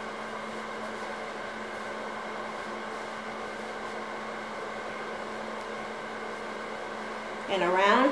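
Steady hum made of several constant tones, like a small motor or fan running.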